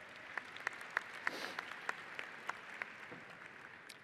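Audience applauding, with single claps standing out from the patter, dying away near the end.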